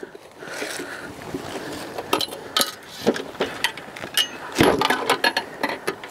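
Metal folding camping table being handled: a string of sharp clicks and clinks from its legs and frame, with a heavier thud about two-thirds of the way through as the table is turned upright and set down on its legs.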